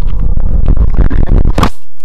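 A loud, rough, low rumbling noise lasting about a second and a half, cutting off suddenly.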